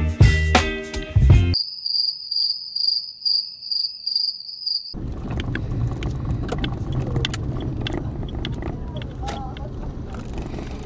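Music cuts off about a second and a half in, and crickets chirp in a steady, high pulsing trill for about three seconds. From about five seconds in, a steady low rumble of a car driving, heard inside the cabin, with small scattered clicks.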